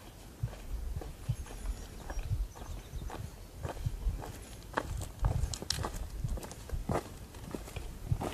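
Footsteps of a hiker in boots walking down a dirt forest trail at a steady pace, growing louder as the walker comes closer.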